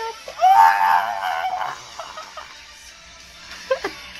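A man singing one long, wavering note, loud at first and then fading, followed by a few short voice sounds near the end.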